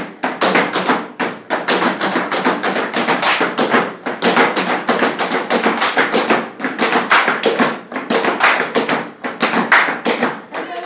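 Gumboot dance: hands slapping rubber wellington boots and clapping in a fast, steady rhythm of sharp slaps, several a second.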